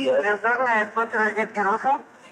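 Speech only: a person talking continuously, in a language the recogniser does not transcribe.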